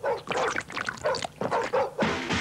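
Dog-like barks and yelps from cartoon characters scuffling, several short ones in quick succession.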